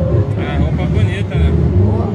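Samba school parade: a heavy, pulsing low drum beat from the bateria with voices singing over it, loud and muddy on a phone microphone.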